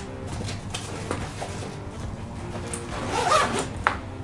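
Zipper on a pocket of a Red Gills fabric tackle backpack being pulled shut, with handling of the nylon fabric and a few small clicks; a sharp click just before the end.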